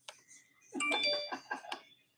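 A short electronic chime of several bell-like tones sounding together, starting about a second in.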